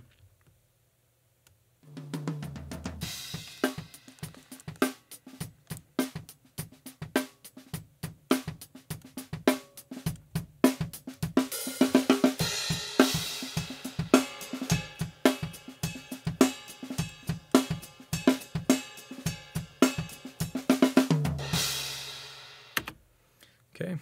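Raw, unprocessed drum-kit recording heard through only a spaced pair of overhead microphones: kick, snare, hi-hat and cymbals playing a groove that starts about two seconds in after a moment of silence. The left and right overheads are being brought up and balanced, and the playing ends on a hit that rings out about a second before the end.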